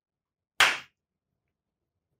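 A single sharp slap-like smack about half a second in, dying away within a third of a second, with silence on either side.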